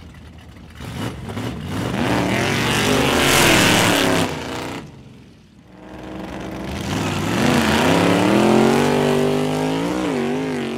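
1932 Ford gasser's Buick Nailhead V8 drag-racing: loud revving with climbing pitch from about a second in, a brief lull at the midpoint, then a second hard pull whose pitch climbs, dips once at a gear change and climbs again.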